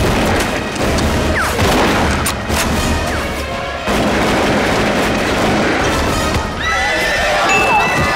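Cavalry battle soundtrack: music playing over horses whinnying and hooves galloping.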